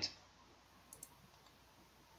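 Two faint, quick clicks close together about a second in, over quiet room tone.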